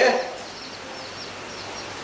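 A man's speech breaks off right at the start, leaving steady background noise with a faint low hum and a few faint high chirps.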